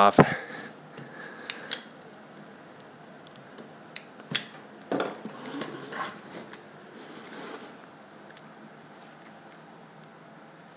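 A thin vacuum-formed plastic face shell being pried and flexed off its cast buck with gloved hands: scattered clicks and taps of the plastic, the sharpest about four seconds in and a few more around five to six seconds. The shell is stuck fast to the buck, which is put down to a mold release problem.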